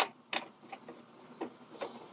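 A few light clicks and knocks from hand-tightening the carriage knob on a Bizerba SE12 slicer, the sharpest one right at the start; the slicer's motor is not running.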